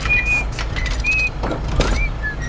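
A person whistling a few short, high notes of a tune, rather off-key, with a few knocks and a steady low rumble underneath.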